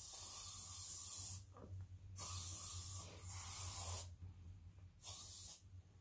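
Aerosol hairspray can sprayed in four hissing bursts. The first runs about a second and a half; the other three are shorter, near the middle and towards the end.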